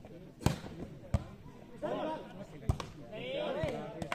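Volleyball smacked by players' hands in an outdoor rally: three sharp hits, about half a second in, just over a second in and near three seconds in, with players' voices calling out between them.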